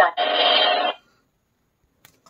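Talking flash card reader's small speaker playing a short, steady sound effect for under a second right after announcing 'agitator truck', then falling silent.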